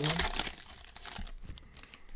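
Foil wrapper of a 2020 Panini Select football card pack crinkling as it is torn open by hand, loudest in the first half second, then fading to light rustling as the cards come out.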